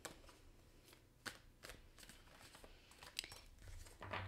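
Faint handling of a tarot card deck being shuffled: several light, sharp card snaps and rustles at irregular intervals.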